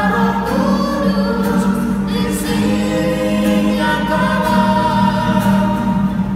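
A woman and children singing a hymn together in unison, held notes moving from phrase to phrase, with a strummed acoustic guitar accompanying them.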